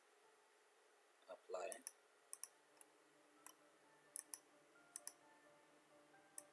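Computer mouse clicking: a scattering of quiet single clicks, some in quick pairs, over faint room tone, with a brief murmur of voice about a second and a half in.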